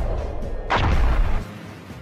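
Battle sound effects of cannon fire: a low rumble that swells into one large cannon blast about three-quarters of a second in, dying away by about a second and a half.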